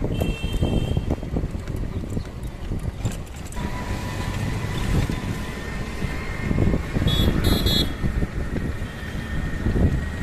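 Street traffic heard from a moving vehicle: a steady engine and road rumble, with short high horn toots just after the start and two more about seven seconds in.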